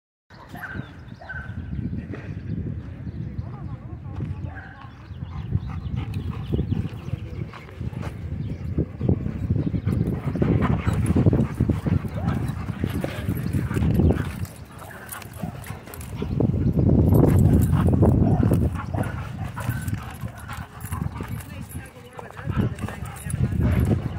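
Dogs playing at close range, with dog vocalizing such as barks and growls amid low rumbling noise that swells loudest in two stretches in the middle.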